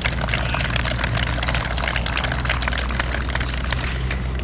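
Steady low engine drone of road traffic, with a scatter of faint ticks over it.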